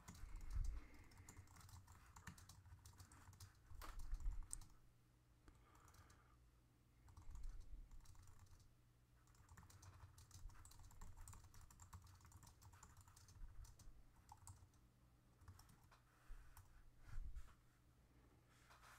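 Faint typing on a computer keyboard: irregular runs of key clicks with pauses, and a few louder low thumps.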